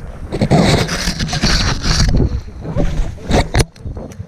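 Loud scraping and rustling of snow and jacket fabric rubbing right against the camera's microphone, with a few sharp knocks near the end.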